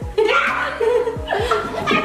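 Several young women laughing as a lifted partner yoga pose collapses.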